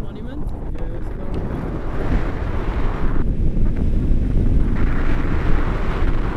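Wind buffeting the camera's microphone in flight on a tandem paraglider: a loud, steady rumble of airflow that swells about two seconds in and again near the end.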